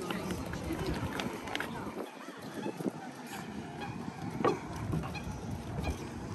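Outdoor pedestrian ambience: passers-by talking and footsteps on the walkway, with scattered short clicks and knocks.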